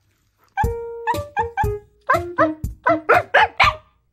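About ten short barks from a Shiba Inu in quick, evenly paced succession over music with a steady bass line. They start about half a second in and get louder toward the end.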